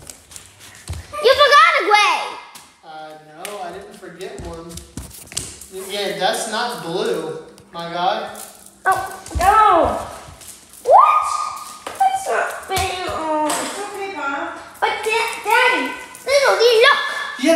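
People's voices talking and calling out, with sharp rises and falls in pitch, but no words clear enough to make out.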